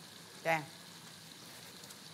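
Faint steady sizzle of food frying in a pan, with one short vocal syllable about half a second in.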